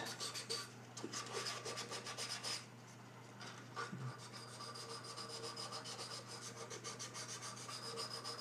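Fast back-and-forth rubbing of a small abrasive against the metal electrode of a paraffin heater's burner, scouring off surface build-up. It is faint, with a pause of about a second partway through before the strokes go on.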